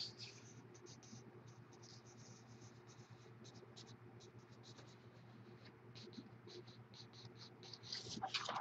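Near silence: a faint steady hum with light, scattered scratchy rustles of a printed paper sheet being handled.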